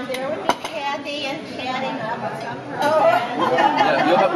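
Several people talking over one another around a dinner table, with a single sharp clink of tableware about half a second in; the voices grow louder about three seconds in.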